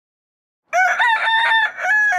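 A rooster crowing once, a multi-syllable cock-a-doodle-doo beginning just under a second in after silence.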